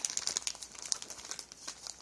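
Clear plastic packaging crinkling as a handful of packaged cards is shuffled: a rapid run of small crackles that thins out toward the end.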